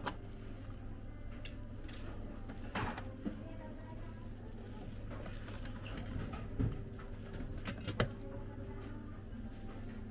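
A few sharp clicks and knocks, several seconds apart, from the lids of a buffet rice cooker being handled, over a steady low hum.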